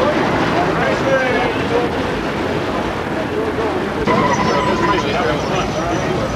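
Street traffic with cars passing and indistinct voices of people nearby, with a brief steady tone about four seconds in.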